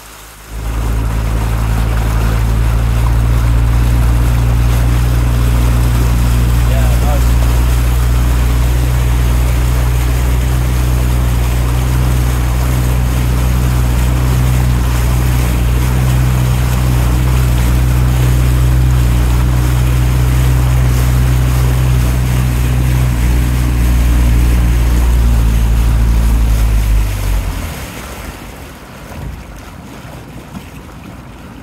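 Small boat's outboard motor running at a steady speed close to the microphone, a loud even low hum; near the end it drops away, leaving wind and water noise.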